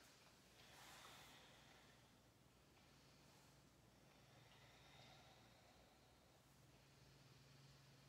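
Near silence: room tone with a faint steady low hum and a few faint soft noises.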